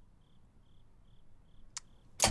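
Faint crickets chirping in a steady, even rhythm of about two to three chirps a second, with a single sharp click near the end.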